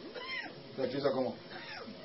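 A cat meowing twice, each a short high call that rises and falls, with a person's voice in between.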